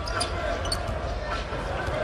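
Basketball dribbled on a hardwood arena court, a bounce about every half second, over steady arena crowd noise.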